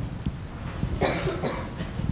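A single cough about a second in, over low room noise.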